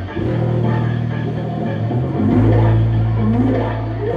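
Live doom/stoner rock band playing: electric guitar and bass guitar hold long, low chords. The chord changes about a quarter second in and again a little past halfway.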